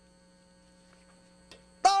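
Near silence with a faint, steady electrical mains hum made of several fixed tones. A man's voice starts near the end.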